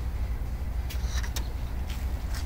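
Steady low rumble of outdoor background noise, with a few short crackles about a second in and again near the end.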